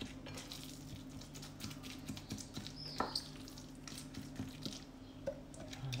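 Hand mixing raw minced meat with a puréed tomato, onion and herb mixture in a glass bowl: faint wet mixing noises with scattered small clicks.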